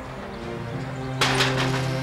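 Knuckles knocking a quick few times on a wooden front door, a bit over a second in, over soft background music.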